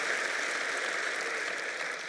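Large audience applauding steadily, easing off slightly near the end.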